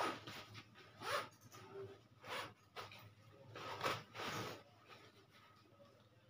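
Backpack zipper being pulled open in several short strokes, with the rustle of the bag's fabric as it is handled.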